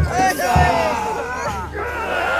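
Mikoshi bearers shouting together as they carry the portable shrine, several voices overlapping, with low thumps near the start and about half a second in.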